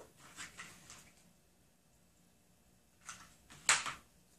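Plastic spoons being handled: a few faint rustles and clicks in the first second, then two short, louder handling noises near the end.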